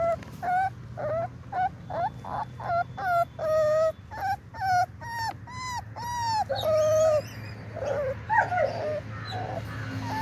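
Dogo Argentino puppy whimpering: short, high, wavering cries about two a second, a few drawn out longer, over a low steady hum.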